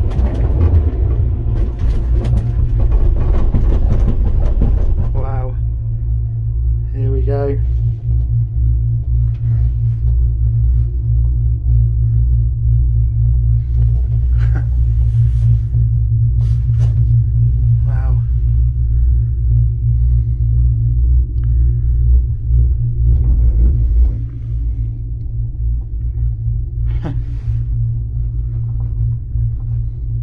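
Steady low rumble inside a gondola cabin riding along its cable. A louder rushing noise fills the first few seconds as the cabin runs out of the station, and a few short knocks come later.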